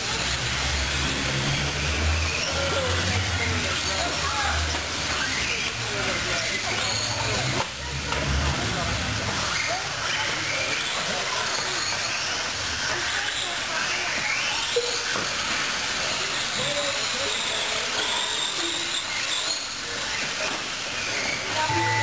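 Several 1/10-scale electric R/C buggies and trucks racing, their electric motors whining with pitches that glide up and down with the throttle, over a steady hiss.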